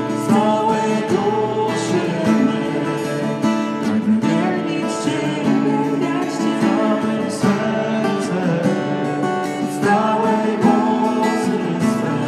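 Worship song played on strummed acoustic guitar, with singing voices.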